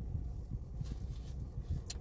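A few faint sips of a thick milkshake through a plastic straw, with a short sharp click near the end, over a steady low rumble inside a car cabin.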